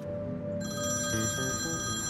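Mobile phone ringing, a high steady ring that starts about half a second in, over background music.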